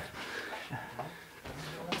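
Three short sharp taps of arm-on-arm contact between sparring partners, over a man's low murmured voice.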